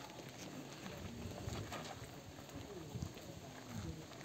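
Footsteps of several people walking on a dirt and gravel path: scattered, irregular crunches and scuffs, with faint distant voices beneath.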